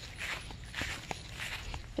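Quiet footsteps walking across a grass lawn: a run of soft, regular steps.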